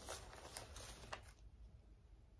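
Faint rustling and a few light taps of paper sewing-pattern envelopes being handled.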